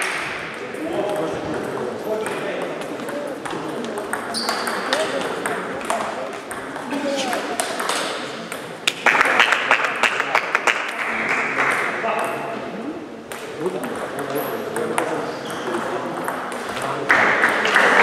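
Table tennis balls clicking off bats and tables in a reverberant sports hall, many separate strikes from several tables, with quick runs of rally hits about halfway through and near the end.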